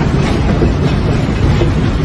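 Loud, continuous low rumble with rattling, heard from a dashcam inside a moving car.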